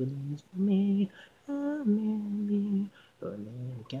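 Isolated female pop vocal singing with no instruments: a few short sung phrases with brief gaps between them and a longer held note about halfway through.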